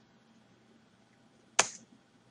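A single sharp click about one and a half seconds in, a computer mouse click advancing the presentation slide, against near silence of room tone.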